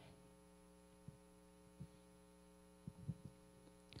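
Near silence: a faint, steady electrical hum, with a few faint brief sounds scattered through.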